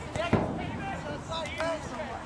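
Several voices calling and shouting in short bursts, with one sharp thud about a third of a second in.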